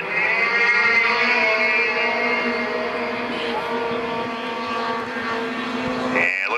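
A pack of junior 340 class racing snowmobiles, two-stroke engines, accelerating together off the restart. Several engine notes climb in pitch over the first second, then hold at full throttle, easing off slightly as the field pulls away.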